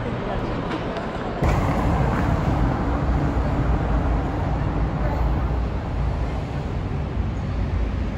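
Murmur of people's voices in a large shopping arcade, cut off about a second and a half in by steady city street traffic noise with a heavy low rumble.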